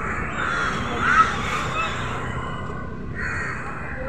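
A crow cawing a few times in the first two seconds, the loudest call a little over a second in, over a steady background of noise.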